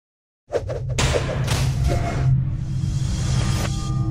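Intro music for a logo animation, starting about half a second in after silence: a heavy low bass drone with whooshing sound-effect swells. Near the end the whooshes drop away, leaving steady held tones.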